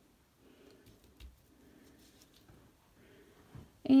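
Faint handling sounds: a few light taps and rustles as a wax block crayon is picked up and a spiral-bound drawing book is shifted on the table, with a soft knock about a second in.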